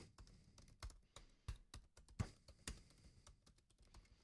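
Faint typing on a computer keyboard: a handful of quiet, separate key taps spread over a few seconds.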